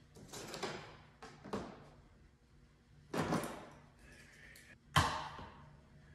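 Handling noises of hands-on work at a workbench: three short scraping or rustling noises, then a sharp knock about five seconds in that rings out briefly.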